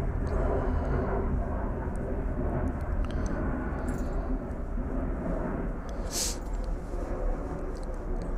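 Steady low rumbling background noise, with a brief hiss about six seconds in.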